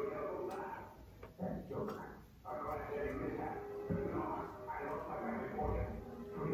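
A person's voice, talking or singing without clear words, through most of the stretch, with a few faint clicks of a knife on fruit and a cutting board in the first two seconds.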